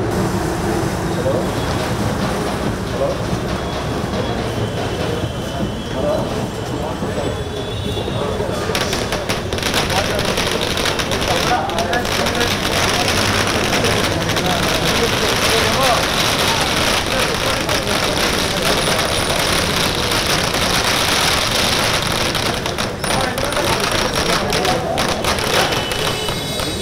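Crowd chatter, then from about nine seconds in a long string of firecrackers going off in rapid crackling bursts that keep on almost to the end.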